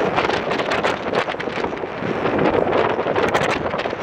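Wind buffeting the microphone, gusting irregularly over the steady running noise of a Claas Lexion 760TT combine harvester.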